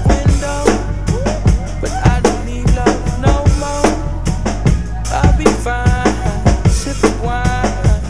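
Pearl acoustic drum kit played in a steady hip-hop groove, with kick and snare hits over a recorded backing track's deep bass and sliding melodic lines.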